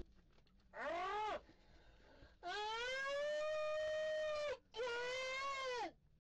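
Three drawn-out wailing cries from a voice. The first is short, the second lasts about two seconds, and the third comes near the end. Each rises in pitch at its start and falls away at its end.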